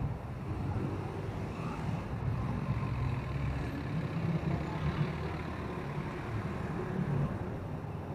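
Passenger jeepney's diesel engine running close by, a steady low rumble that is loudest through the middle, with street traffic around it.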